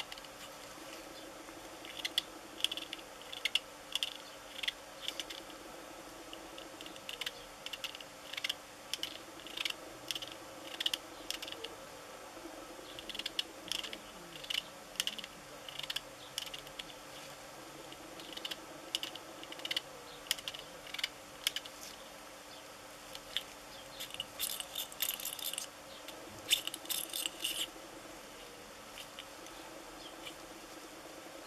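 Small 3D-printed resin model of an electric unicycle worked in gloved hands: clusters of light plastic clicks and ticks as its sprung suspension is pressed and released, coming every second or so, with a denser run near the end.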